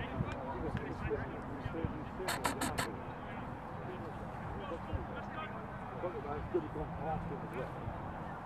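Distant voices of players and spectators calling across an open field, with four quick sharp claps about two and a half seconds in.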